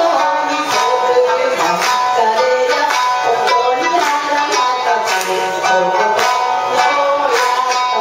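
Shamisen played with a plectrum: a steady run of sharply struck, twangy plucked notes forming a melody.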